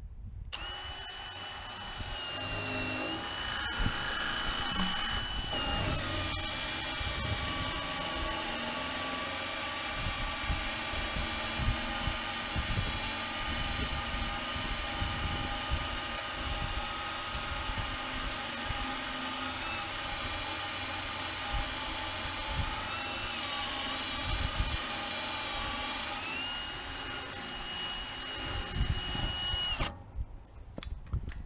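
Cordless drill mounted in a StrongArm magnetic drill base, drilling into the steel side of a gun safe under steady load. The motor's whine starts about half a second in and drops in pitch around six seconds and again for a few seconds in the twenties as the load on the bit changes. It stops right at the end.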